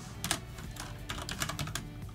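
Computer keyboard typing: a fast, uneven run of keystrokes as a line of code is entered.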